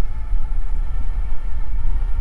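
Wind buffeting the microphone with a steady low rumble while riding an electric bike at cruising speed on a paved path, with a faint steady whine above it.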